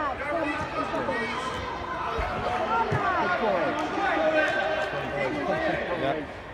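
Many voices calling and shouting over one another as children play football on an indoor pitch, with spectators joining in. A couple of low thuds come about two and three seconds in.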